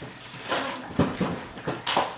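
Rustling and handling of an opened cardboard box and its packaging, a run of irregular scratchy crinkles and light knocks with a sharp, loud crackle just before the end.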